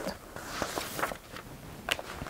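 A sheet of paper being handled: a few soft clicks and rustles over faint background hiss.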